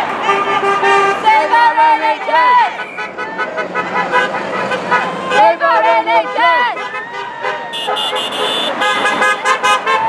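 Car horns honking repeatedly from passing traffic, several horns overlapping and sounding again and again, with voices of the crowd mixed in.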